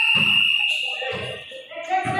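A referee's whistle blown in one long shrill blast that stops about a second in, over the thuds of a basketball bouncing on the concrete court and players' voices.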